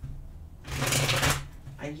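A deck of tarot cards shuffled in the hands: one brisk riffle of card noise lasting under a second, about midway through.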